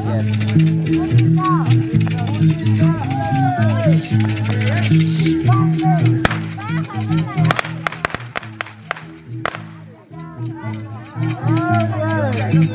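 Andean festive dance music with a low, repeating bass figure under a high, sliding melody line. It thins out about eight seconds in and picks up again near the end. A few sharp clicks fall around the middle.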